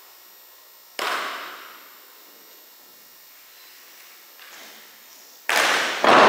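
Wooden drill rifles brought down hard in unison on a wooden gym floor: two sharp knocks, about a second in and again near the end, each ringing on in the hall's echo.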